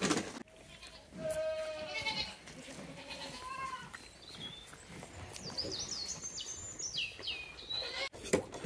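A goat bleating: one long wavering call about a second in, then a shorter call a couple of seconds later. Small birds chirp in a run of quick, high, falling notes in the second half.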